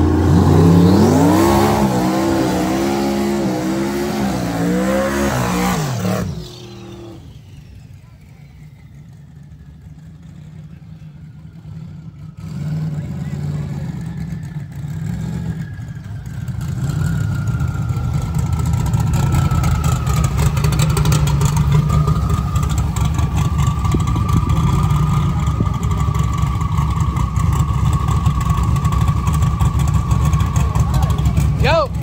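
Drag-racing cars' engines: one accelerates hard, its note climbing and stepping down through several gear changes, then cuts off about six seconds in. Later a loud engine runs steadily close by with a thin high whine.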